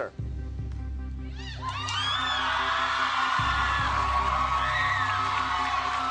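A low, steady dramatic music bed, joined about a second and a half in by a studio audience cheering and screaming.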